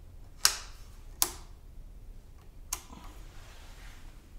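Three sharp clicks from a 1981 Suzuki GS450L's handlebar switches, unevenly spaced, as the lights are switched on and off to check them.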